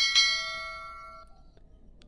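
Notification-bell chime sound effect of a subscribe-button animation: one bright, many-toned ding that fades out over about a second and a half.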